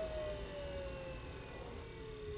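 Equipment powering down after being switched off: a single whine gliding slowly downward in pitch, over a low rumble.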